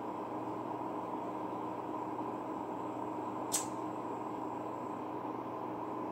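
Steady background hum of a small room, with one short, sharp click a little past halfway.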